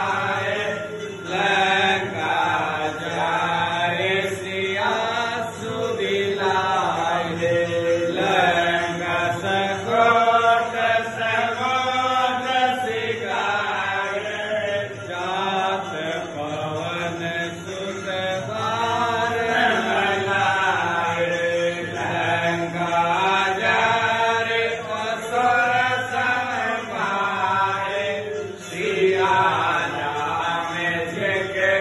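Voices chanting a Hindu devotional aarti hymn in one continuous melodic chant.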